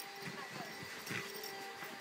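Nylon sleeping bag rustling in short bursts as a dog shifts and digs around underneath it, over a faint steady hum.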